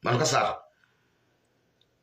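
A man's voice speaking for about half a second, then a pause with only faint room hum and a small click near the end.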